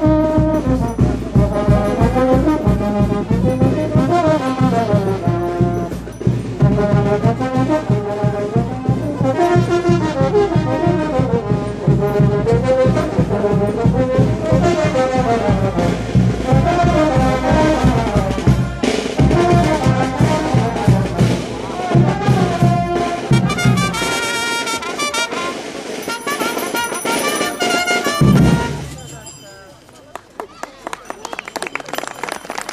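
Brass band playing a lively dance tune over a fast, steady drum beat. The drum and bass drop out some six seconds before the end, and the music stops just before the end.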